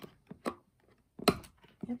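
A few light clicks and then one sharp knock from a finger working open a small cardboard advent-calendar drawer.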